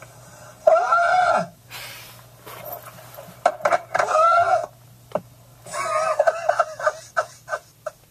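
Wordless hollering and cries from a comedy prank call on the car's satellite radio, heard through the car speakers in three loud bursts with short pauses between.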